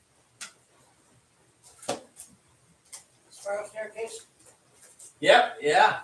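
A man talking in short phrases between songs, with no guitar playing; two sharp clicks come before the talk, in the first two seconds.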